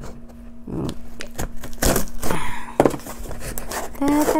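Scissors cutting the packing tape on a small cardboard box, then the cardboard flaps being worked open: a run of irregular scrapes, clicks and rustles. A faint steady hum runs underneath.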